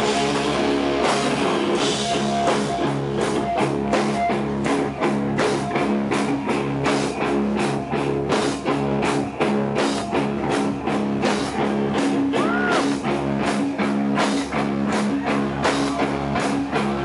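Rock band playing live: electric guitar and bass guitar over a steady drum beat.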